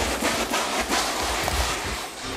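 Great hornbill in flight, its wingbeats making a repeated whooshing, several beats a second.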